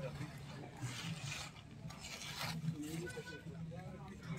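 Faint background chatter of people's voices, with brief light rustling noises about one and two seconds in.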